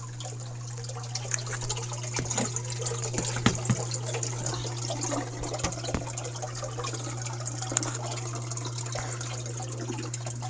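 Water gurgling and splashing irregularly as a hang-on-back aquarium overflow's U-tube siphon restarts and its box fills up again after the return pump is powered back on, over a steady low hum. The gurgling picks up about a second in. It shows the overflow recovering from a simulated power failure.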